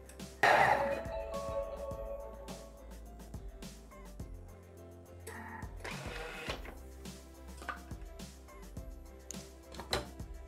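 Background music with steady held tones, and a short, loud whirring rush about half a second in: the Thermomix blade spinning up at speed 10 to pulverize sugar.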